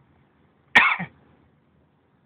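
A single short cough from a person, about a second in.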